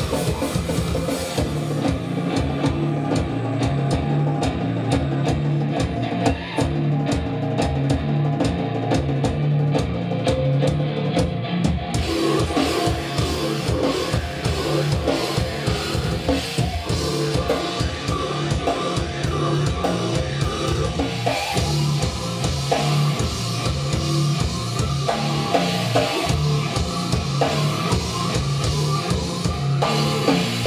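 A live grind band plays loud and fast: drum kit with rapid bass drum and electric guitar pounding a repeating low riff. The top end is thinner for the first ten seconds or so, then fills back in with the rest of the kit.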